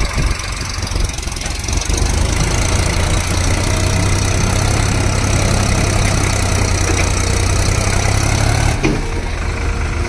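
Solis tractor's diesel engine running under load as it strains to pull free of deep mud. It gets louder about two seconds in and drops back shortly before the end.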